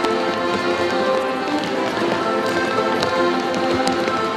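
Folk dance music with steady held notes, over the light tapping of children's skipping steps on a wooden floor.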